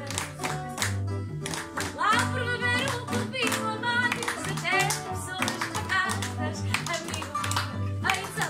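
Live fado: a woman singing, accompanied by a Portuguese guitar and a classical guitar (viola). Plucked guitar notes run throughout, and the voice comes in about two seconds in.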